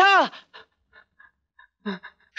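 A man's loud shouted call trails off in the first moment. Short, faint panting breaths follow as he runs, with a brief voiced breath near the end.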